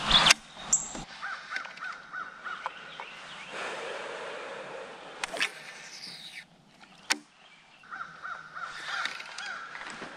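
A bird calling in two runs of quick, repeated short calls, one shortly after the start and one near the end. A few sharp clicks and knocks come in between.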